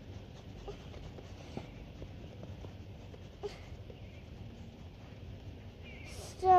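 Quiet outdoor background with a few faint, brief taps and scrapes from hands working at the ground.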